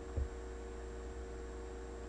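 Steady electrical mains hum with faint hiss, and a brief soft low thump just after the start.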